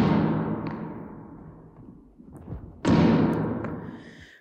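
Film soundtrack: a ball thrown against a wall, two heavy thuds about three seconds apart, each echoing long and fading slowly as in a huge empty hall.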